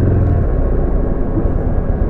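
Buell XB12X motorcycle's air-cooled V-twin engine running under way with a low rumble, loudest in the first half-second, mixed with wind and road noise.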